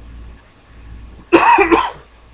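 A person coughs once, short and loud, about a second and a half in.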